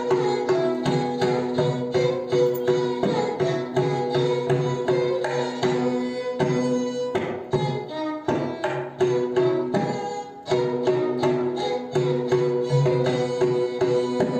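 Live Carnatic music: a violin playing sustained, ornamented notes over quick, continuous mridangam drum strokes.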